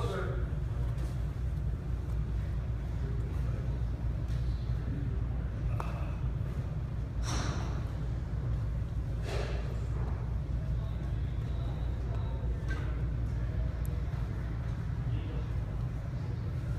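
Steady low rumble of a large indoor hall, with a few brief, indistinct noises and faint background voices.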